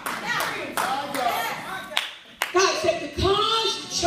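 Hand clapping in quick, irregular strokes through the first half, with raised voices calling out over it; in the second half a loud voice carries on in long exclamations.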